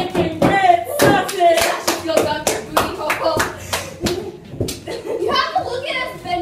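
Hands clapping about twice a second, with children's voices over the claps.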